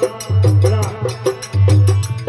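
Instrumental passage of a Rajasthani folk bhajan: a dholak drum plays a repeating rhythm with deep bass strokes about every 1.2 seconds, over harmonium and a fast, steady clicking of small percussion.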